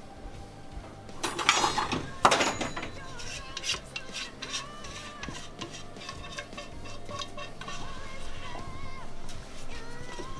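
A spoon scraping and knocking against a large pot as curry is scooped out onto a platter: two loud scrapes just over a second in, then a run of shorter clinks and scrapes. Background music plays underneath.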